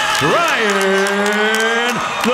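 Boxing ring announcer's voice over the arena PA, holding one long drawn-out call: the stretched-out end of a fighter's introduction. It rises at the start and then holds steady on one pitch.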